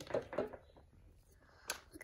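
Faint handling of a plastic slime bucket over a plastic toy pool, with a single sharp knock about one and a half seconds in.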